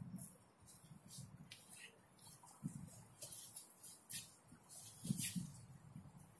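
Faint, irregular scuffs, swishes and brief thuds of two people moving and exchanging techniques in martial-art drills on artificial turf, with short sounds of breath or voice among them.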